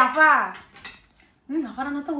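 A metal spoon clinking lightly against a bowl of food a few times, between stretches of a woman's voice.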